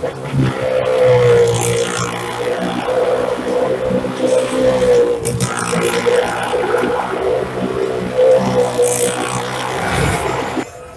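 Motorcycle and small-car engines held at steady high revs as they circle the wall of a wooden well-of-death drum. The result is a loud, continuous drone that wavers slightly in pitch.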